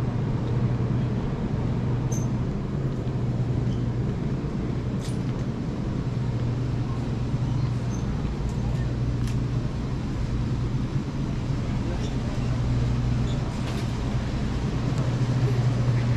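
Steady low hum of a grocery store's refrigerated display cases running, with faint background voices and a few light clicks.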